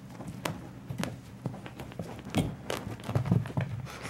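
Irregular soft thumps and taps of a kitten's paws on carpet as it pounces on a toy ball and scampers after it. The heaviest thumps come in the second half.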